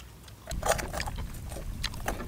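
A metal spoon scraping and clicking against a stainless steel pan of fried rice, in a few sharp strokes starting about half a second in, over a low rumble.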